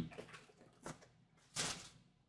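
Faint handling noises: a small click, then a short rustle as a gloved hand reaches for a sealed trading-card box.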